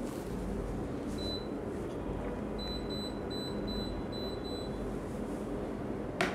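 Short high electronic beeps over a steady low room hum: one beep about a second in, then a quick run of six or seven beeps, about three a second, lasting about two seconds.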